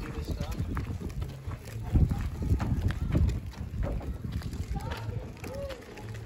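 Footsteps of an adult and a small child running and climbing up the wooden stair treads of an iron footbridge: a run of irregular knocks.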